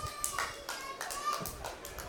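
Faint, distant shouts of players and spectators at a football match, picked up between bursts of commentary.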